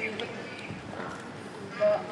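Low background chatter, then a brief louder vocal sound near the end.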